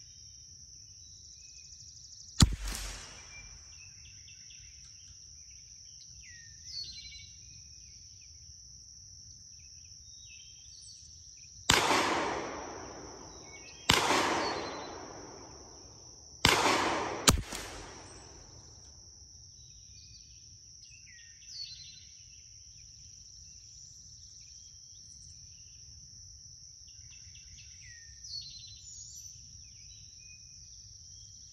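.22 LR rimfire shots: five sharp reports, each followed by a short echo tail. One comes about two seconds in, then four follow close together between about twelve and seventeen seconds. A steady high insect drone and faint bird chirps run underneath.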